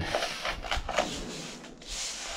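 Hand brush sweeping gritty dirt and ash into a plastic dustpan on a steel floor: several short, scratchy strokes.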